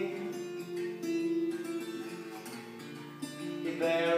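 Acoustic guitar played live, chords strummed and left ringing between sung lines, with fresh strums about a second in and again just after three seconds.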